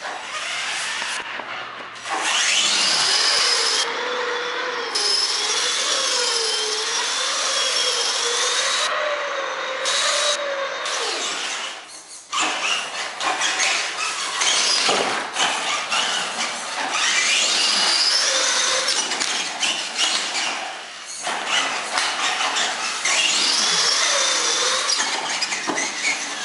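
Electric motors of a Clodbuster RC monster truck whining as it spins donuts, the whine rising and falling with the throttle, over the scrub of its tires on a concrete floor. It eases off briefly about halfway through and again later.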